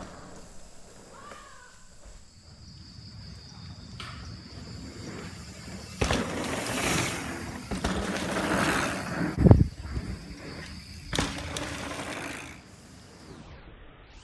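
Mountain bike tyres rolling and crunching over a dirt trail, loud once a rider comes close about six seconds in, with a heavy thump about two-thirds of the way through.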